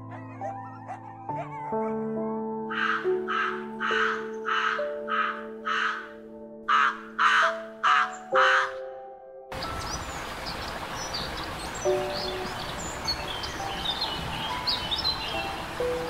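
A crow-family bird gives a run of about ten harsh caws, roughly two a second, over soft music. Then, about halfway through, a steady outdoor hiss takes over, with small birds chirping.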